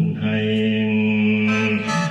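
Khaen, the Lao bamboo free-reed mouth organ, playing on its own, holding a steady drone chord of several notes at once, with higher notes joining about one and a half seconds in.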